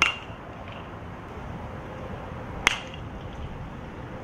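A baseball bat striking a pitched ball twice, about two and a half seconds apart, each hit a sharp crack with a brief ring.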